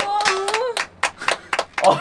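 A held sung note ends, then hands clap about six times in quick succession, followed by a short burst of voice near the end.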